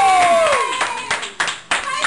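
A small group clapping by hand, irregular claps following one another, with one voice's long cheer falling in pitch over the first half-second.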